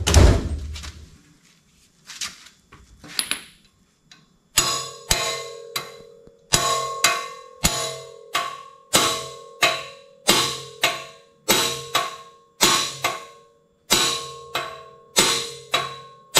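A hammer striking a socket on a long extension to drive an axle seal into a Dana 30 axle tube, metal on metal. After a thump and a few light knocks, steady blows come from about four seconds in, roughly two a second and often in pairs, each leaving a ringing tone in the steel.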